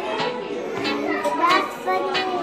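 Young children's voices chattering, with one child close by talking excitedly.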